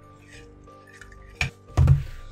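A small metal pencil sharpener clinks once against a glass dish, then a dull thump near the end, over quiet background music.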